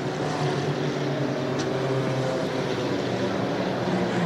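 Steady drone of running engines in the trackside sound, its pitch holding level and then stepping up slightly about three seconds in.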